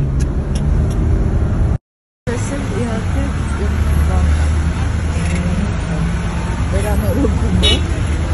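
Steady low engine hum heard from inside a car, with people talking over it. The sound drops out briefly just before two seconds in, where the footage cuts.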